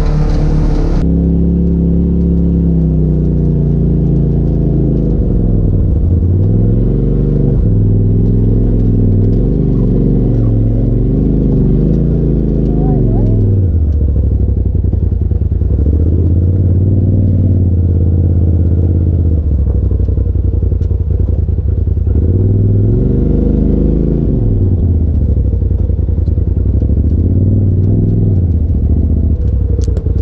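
Side-by-side UTV engine driving along a dirt trail, its pitch rising and falling several times as the throttle is worked, with steadier stretches between.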